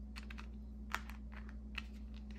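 Light clicks and taps of tarot cards being handled and set down on a table, several scattered through the two seconds with one sharper click about a second in, over a steady low hum.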